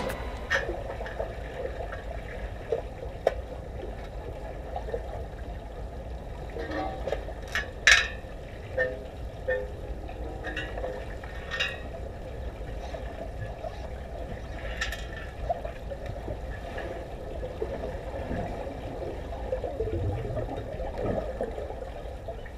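Pool water heard through an underwater camera: a steady, muffled low rumble with scattered short clicks and knocks, the loudest about eight seconds in.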